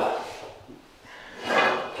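A door being pulled open, with a quiet handling sound in the short lull between words.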